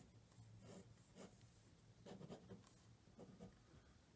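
Faint scratching of a pen on paper, drawing lines in several short strokes.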